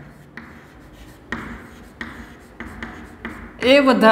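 Chalk writing on a chalkboard: about five short scratchy strokes in a row, with a man's voice coming in near the end.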